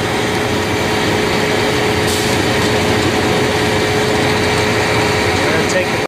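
Steady running of the machinery that loads peanut hulls from a rail car into a trailer: an engine and an inclined belt conveyor. A steady hum runs under the noise and fades out a little past halfway.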